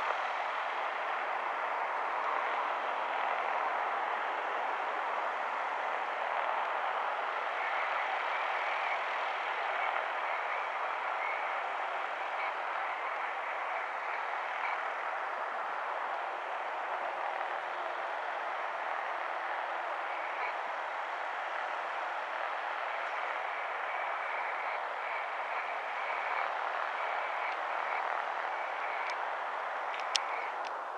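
Steady drone of a Diamond single-engine light aircraft's piston engine at take-off power, heard from a distance as it takes off and climbs away.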